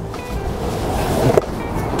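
Surfskate wheels rolling and carving on smooth concrete, a rushing hiss that builds over the first second or so, under background music.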